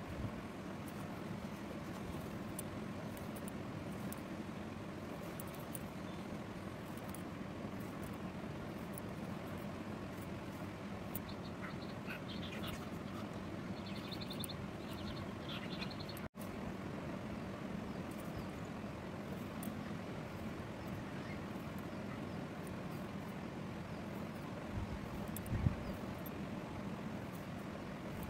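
Steady low hum and hiss of background room noise, with faint rapid chirps a little before the middle, and a few soft thumps near the end.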